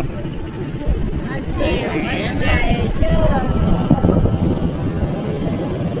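People's voices talking, partly unclear, over a constant low rumble.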